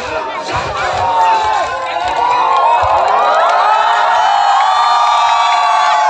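Large crowd cheering and shouting together, swelling about a second or two in and then holding loud, with many voices whooping at once.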